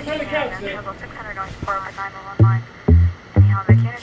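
Latin pop recording: a voice over light backing for the first half, then a heavy bass drum comes in about two and a half seconds in with a run of loud beats.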